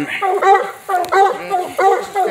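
Coonhound barking treed at the base of a tree, a steady run of evenly spaced barks, about three in two seconds. The barking is the hound's signal that it has a raccoon up the tree.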